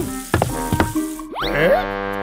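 Cartoon soundtrack music with comic sound effects: two short sharp hits, then a quick rising swoop about a second and a half in, leading into a held chord.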